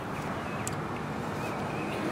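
Steady outdoor background noise with wind on the microphone, and a faint single click less than a second in.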